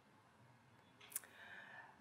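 Near silence: room tone, with a single short click about a second in.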